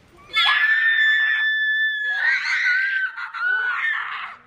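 A girl screaming in excitement: a long high-pitched scream held at one pitch, then a second long scream that wavers up and down, as she celebrates with her arms thrown up.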